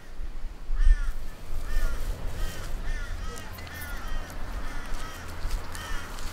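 Crows cawing in a run of short, repeated calls, about two a second, beginning about a second in.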